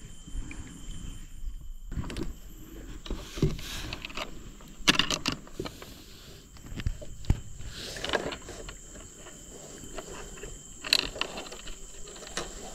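Hands handling fishing tackle, threading line and a hook through a coiled spring bait feeder, with scattered small clicks and rustles over a faint steady high-pitched tone.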